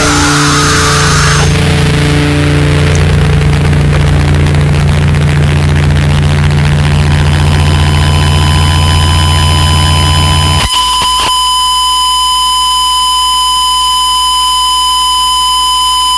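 Harsh noise music: a loud, dense wall of distorted noise over a heavy low drone. About ten and a half seconds in it drops abruptly to a single steady, buzzing high tone.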